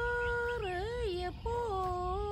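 A single voice singing long held notes. The first note is held steady, then wavers and bends downward about half a second in and breaks off. A new phrase starts about a second and a half in and slides lower.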